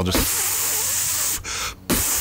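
A man hissing a long 'shhh' through his mouth to imitate a skateboard nose blunt slide: two steady hisses, each about a second and a half, with a short break between.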